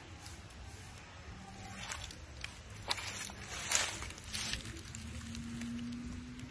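Dry leaf litter and plant stems rustling and crackling as a small herb is handled and picked from the ground, in several short bursts. A faint steady low hum joins about two-thirds of the way in.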